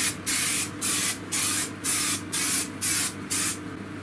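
Aerosol spray-paint can hissing in short bursts, about two a second, as paint is sprayed onto a car's body panel. The spraying stops shortly before the end.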